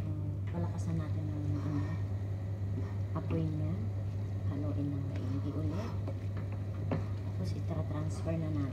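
An indistinct voice talking in the background over a steady low hum, with a couple of sharp knocks of a wooden spatula against a frying pan as a chicken and leek filling is stirred.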